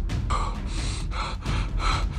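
A man panting hard, out of breath from running: quick, heavy breaths, about two or three a second.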